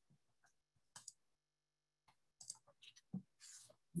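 Faint clicks of a computer mouse being used to advance a presentation slide, against near silence: a quick pair about a second in, then a few scattered clicks near the end.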